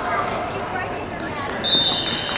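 Crowd voices from the stands at a youth football game. Near the end a referee's whistle starts a loud, steady blast, blowing the play dead after a tackle.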